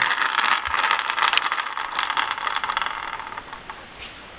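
Wheels and axles of a homemade wooden rubber-band car spinning freely as its wound rubber bands unwind: a rapid rattling whir that slowly dies away over about three and a half seconds.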